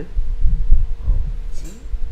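Loud, uneven low thudding and rumbling, with a few faint voice fragments over it.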